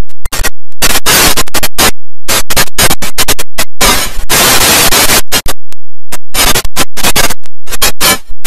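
Heavily distorted, clipped audio chopped into stuttering bursts that cut in and out abruptly. There are longer blasts of harsh noise about a second in and again around four seconds in, and a rapid run of short chops near the end.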